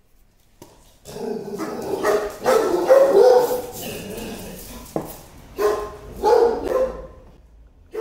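Two dogs barking, starting about a second in with a dense run of barks, then thinning to a couple of separate barks near the end.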